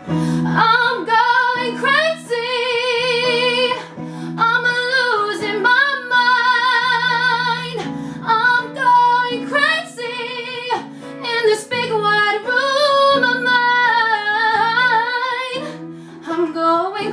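A woman singing long held notes with wide vibrato over guitar accompaniment, her voice plainly the loudest thing throughout.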